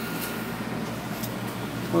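Steady background hum of room noise, with a faint steady high tone running through it.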